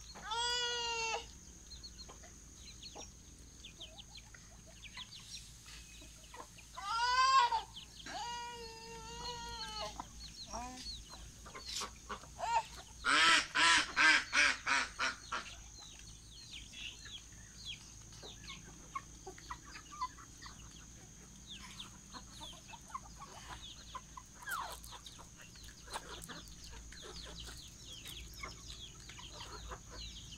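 Backyard chickens clucking and small chicks peeping throughout, with a few drawn-out louder calls near the start and about a quarter of the way in. About halfway through comes a quick run of eight or so loud calls, the loudest thing heard.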